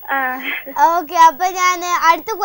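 A young girl's voice speaking in long, drawn-out, sing-song syllables.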